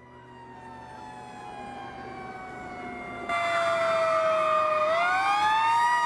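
Fire engine siren wailing, its pitch slowly falling and then rising again near the end. It grows steadily louder, with a sharp jump in loudness a little past halfway.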